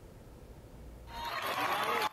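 Faint room hum for about a second, then the noise of a crowd gathered in the street cuts in suddenly, a steady din of many voices.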